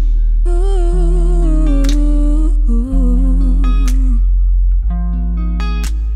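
A soulful R&B band playing: a wordless, hummed vocal line with vibrato, two long held phrases, the second lower, over electric guitar notes and a deep, steady bass.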